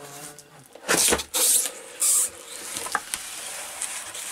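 Cardboard presentation box being opened by hand: three short scraping rustles as the lid is worked loose and lifted, about one, one and a half and two seconds in, then quieter handling with a small click.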